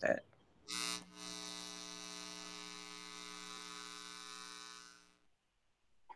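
Steady electrical buzz, a hum with many evenly spaced overtones, coming in about a second in with a short louder onset and cutting out after about five seconds.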